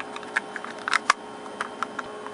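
Irregular light clicks and knocks from handling a small black plastic electronics enclosure as it is closed up and set on a desk, over a faint steady tone.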